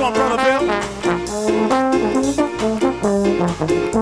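Live band music: a horn section plays a line of held, stepping notes over upright bass and drum kit, with regular cymbal and drum strikes.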